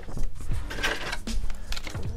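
A sheet of cut puff heat-transfer vinyl being handled and laid down on a heat press platen: a few short rustles and light taps, over faint background music.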